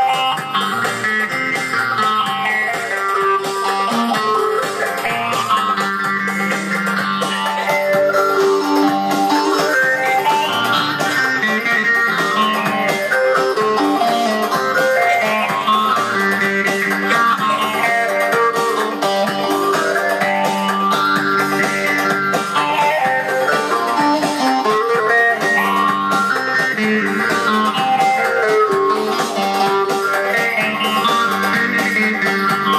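Bağlama (Turkish long-necked saz) played solo, in dense plucked runs of notes that climb and fall again over and over.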